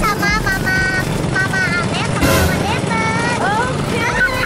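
A girl's high-pitched shrieks and laughter, held and wavering, over a steady low rumble from the moving ride.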